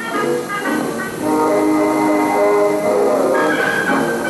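Music from an old film's soundtrack, played back from a projected film: sustained chords of several held notes that change every second or so, with a higher chord entering near the end.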